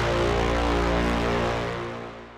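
An EDM brass-stab sample in A# (VEDM3 Brass Stab 16) previewing in FL Studio's browser: one held brass chord that starts to fade out about a second and a half in.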